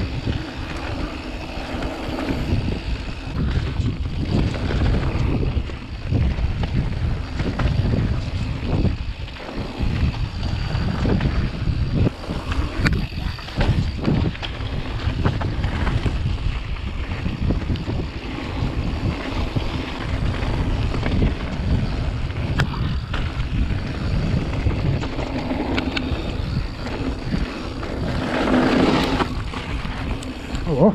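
Mountain bike descending a dirt trail: wind buffeting the microphone and tyres rumbling over the dirt, with frequent knocks and rattles from the bike over bumps.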